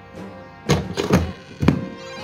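A LEGO Super Mario figure knocking and clicking as it is pressed onto the plastic Fire Mario power-up suit: a few sharp knocks, the last and clearest near the end.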